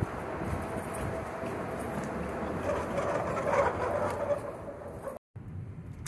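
Car driving, with road and engine noise inside the cabin that goes on steadily and swells a little midway. The sound cuts out abruptly near the end.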